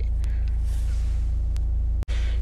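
Steady low rumble inside a car's cabin, with a couple of faint clicks.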